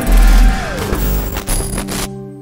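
Logo intro music sting: a deep bass hit, then a falling sweep and two sharp hits near the end, landing on a held chord.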